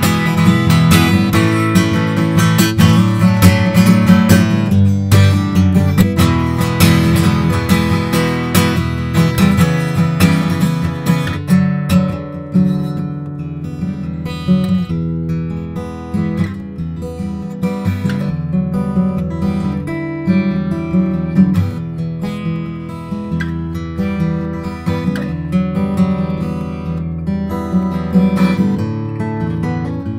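Acoustic guitar played solo: busy strummed chords for about the first twelve seconds, then quieter, sparser picked notes, close-miked.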